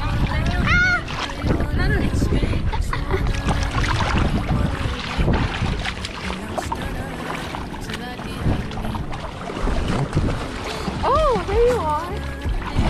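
Shallow seawater sloshing and splashing around people wading, with wind buffeting the microphone. Short high-pitched voice squeals glide up and down about a second in and again near the end.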